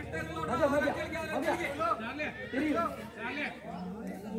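Several people's voices talking and calling out over one another.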